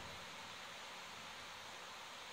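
Faint, steady background hiss: room tone, with no distinct sound.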